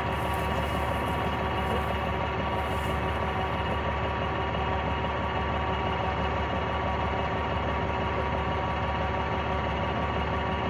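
Large vehicle engine idling steadily, an even hum that holds the same pitch throughout, from a BMP infantry fighting vehicle.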